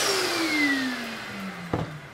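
A small vacuum cleaner motor spinning down after being switched off, its whine falling steadily in pitch; a short knock near the end.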